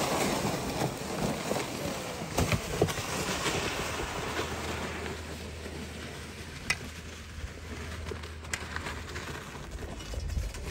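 Gear sleds dragged over snowy lake ice, with footsteps on the snow: a steady gritty scraping hiss, with a few sharp clicks and knocks.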